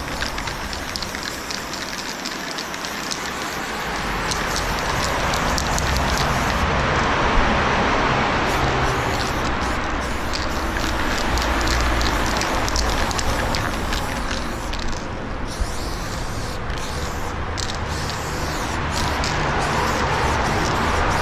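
Aerosol spray paint can hissing in long, nearly continuous sprays as paint goes onto a wall, over a low background rumble.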